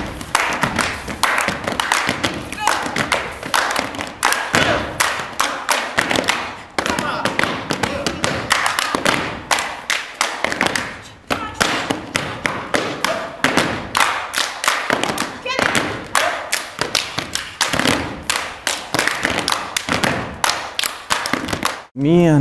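A group of dancers beating out rhythms with their feet and bodies on a wooden stage: body percussion and tap-style footwork, a fast, dense string of stamps and slaps with a few short breaks.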